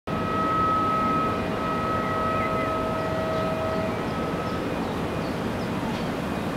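Steady rumble and hum of a distant heavy-industry plant, with a high steady whine that fades out about four seconds in.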